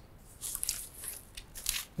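Plastic packaging crinkling and rustling in a few short bursts as a plastic-wrapped monitor stand part is lifted out of a cardboard box.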